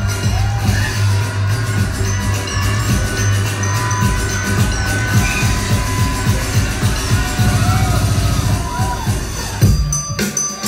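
Loud electronic dance music from a DJ's live set over a club sound system, with a heavy, driving bass line. Near the end the bass drops away.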